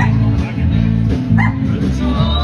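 Live band playing amplified music with guitar over a steady, pulsing bass line. A short, high, rising call cuts above the music about one and a half seconds in.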